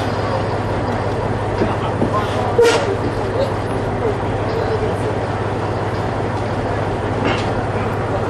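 Airport bus engine idling with a steady low hum while men talk and climb down from it, with one sharp knock about two and a half seconds in.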